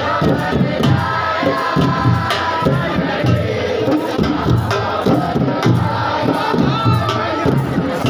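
Siddi dhamal: a crowd chanting and shouting together over a steady drumbeat.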